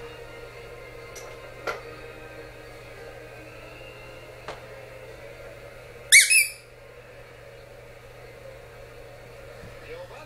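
A squeaky dog toy squeezed, giving two quick high-pitched squeaks about six seconds in.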